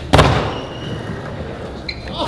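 Skateboard landing a flip trick on a plywood skatepark floor with one loud clack, then the wheels rolling on the wood and fading away.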